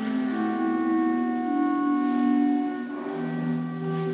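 Pipe organ playing sustained chords, the notes changing every second or so.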